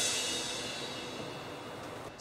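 A crash cymbal ringing out and fading steadily, the tail of a drum-kit hit in background music.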